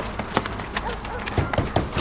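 Footsteps of a small group walking on a pavement, irregular clicks and scuffs, with voices underneath.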